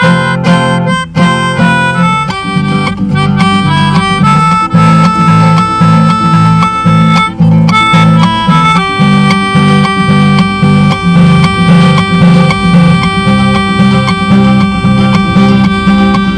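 An acoustic guitar playing a steady rhythmic accompaniment under a melodica playing a melody of held notes. This is instrumental music, with no singing.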